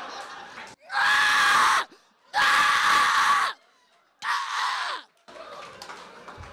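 Three harsh, hoarse screams from one voice through a microphone, each about a second long, with short silent gaps between them.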